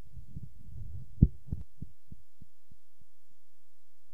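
A sharp low thump on the commentary microphone about a second in, repeated by the sound system's echo effect as a string of fading thumps about three a second. A faint steady low hum is left after the echoes die away.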